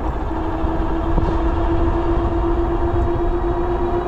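ENGWE L20 e-bike's electric hub motor whining under full throttle, a steady tone that creeps slowly upward in pitch as the bike gathers speed, over a low rumble.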